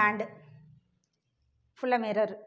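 A woman's voice: a short stretch of speech at the start and again near the end, with a pause in between.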